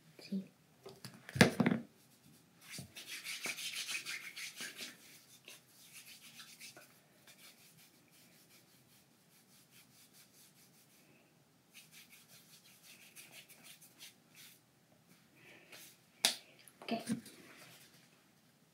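Hands rubbing palm against palm, working a squirt of pink hand product in, in two spells of quick strokes; a sharp click about a second and a half in, and more clicks near the end.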